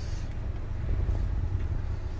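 Steady low rumble of a 2022 Ford Escape's 1.5-litre engine idling, heard from the driver's seat.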